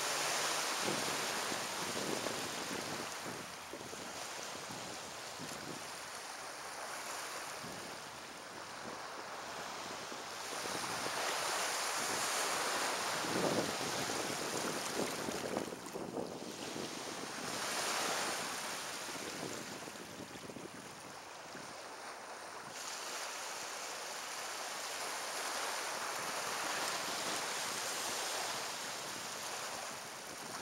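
Small sea waves breaking and washing onto the shore, the surf swelling and falling back every few seconds, with wind rumbling on the microphone.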